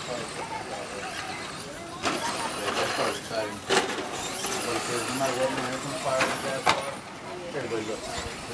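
Electric radio-controlled short-course trucks driving on a dirt track, their motors and drivetrains whining up and down in pitch with the throttle, with a few sharp knocks scattered through.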